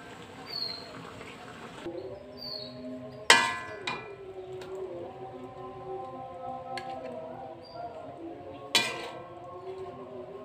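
A metal spatula knocking against an aluminium wok while serving: two sharp clangs with a short ring, one about three seconds in and one near the end, with a lighter tap just after the first.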